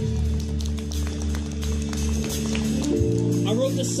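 Live band vamping: keyboard and bass hold sustained low chords while the drum kit taps out light strikes and cymbal hits.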